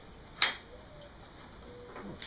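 A single sharp click about half a second in, from the wooden handhold jig being handled on the table-saw top; otherwise faint background.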